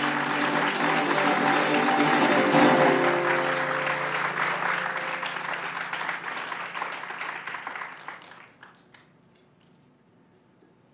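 Audience applauding over the last notes of plucked-string music, which die away a few seconds in; the clapping, loudest early on, fades out by about nine seconds.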